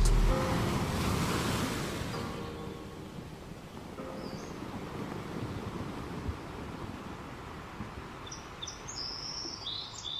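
Steady outdoor ambient noise, with birds chirping near the end. A louder swell fades away over the first couple of seconds.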